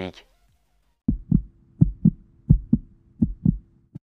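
Heartbeat sound effect: four low double thumps in an even rhythm, starting about a second in.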